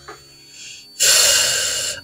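A man's loud, breathy sigh lasting about a second, starting halfway in, a sound of dismay at being reminded of money he had promised.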